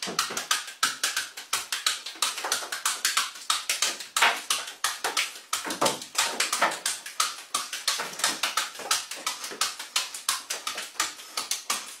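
Apples slapping into a man's hands as he juggles them and takes crunching bites out of one mid-juggle: a quick, steady run of sharp taps, about five or six a second.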